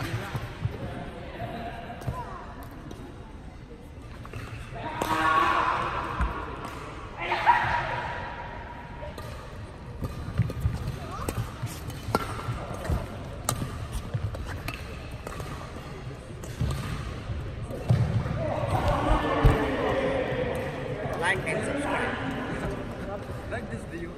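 Badminton doubles rally: repeated sharp racket strikes on the shuttlecock and quick footfalls on the court, in a large sports hall. Players' voices call out briefly about five and seven seconds in, and again for a few seconds near the end.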